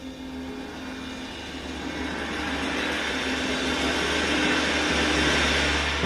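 Big band jazz: a cymbal roll swelling steadily louder under a held low note, building to a loud full-band brass entrance at the very end.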